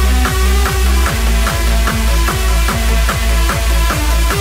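Hardstyle dance music. A heavy distorted kick drum pounds about two and a half times a second, each hit ending in a falling pitch, with sharp percussion between the kicks and synth tones above.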